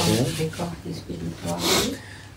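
A man speaking slowly in short phrases with brief pauses: lecture speech.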